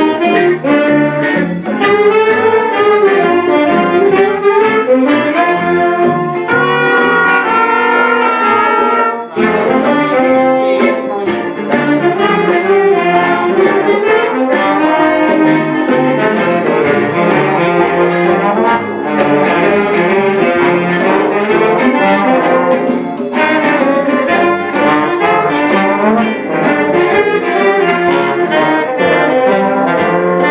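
A student big band playing a jazz chart: saxophone section, trombones and trumpet over electric bass, guitar and drums, with a short break about nine seconds in.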